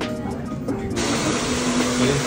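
Background music with a beat, cut off about a second in by the steady rushing blow of a hair dryer.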